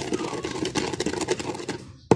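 Incense and kamangyan resin being ground to powder in a mortar: a rapid run of small clicks and scrapes from the pestle.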